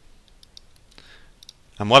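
A few faint, scattered clicks from a computer's keyboard and mouse being worked, then a man's voice begins near the end.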